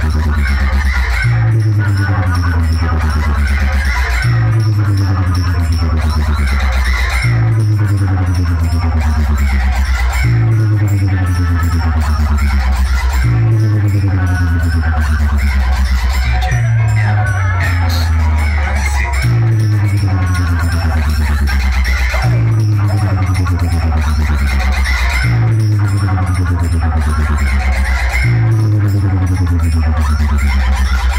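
Loud electronic dance music played through huge stacked speaker cabinets, dominated by heavy bass, with a falling bass sweep that repeats about every three seconds.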